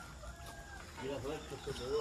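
Faint clucking of domestic chickens, a run of short calls in the second half.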